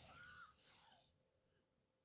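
Near silence: a faint hiss during the first second, then room tone.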